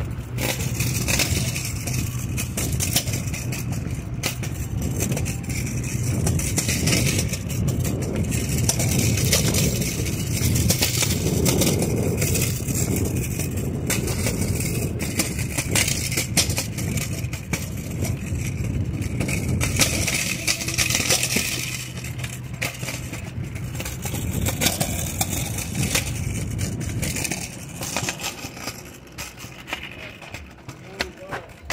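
Crackling rubbing and handling noise on a phone microphone carried while walking fast, over a steady low hum that weakens about two-thirds of the way through.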